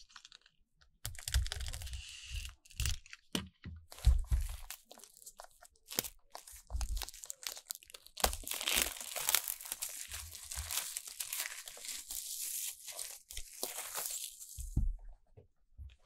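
Plastic shrink wrap being torn open and peeled off an album: sharp crackles and soft thumps of handling at first, then a long continuous crinkling of the film from about halfway through, which dies away near the end.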